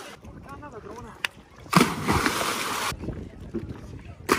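A person jumping off a rubber dinghy into the sea: a loud splash as his body hits the water about halfway through, lasting about a second.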